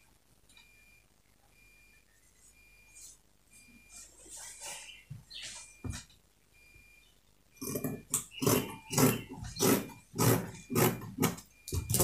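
Scissors cutting through cotton print fabric on a padded table: a few faint snips, then, a little over halfway in, a run of louder crunching cuts about two a second.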